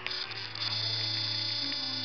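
Steady electrical hum with a high-pitched whine above it, the music almost gone.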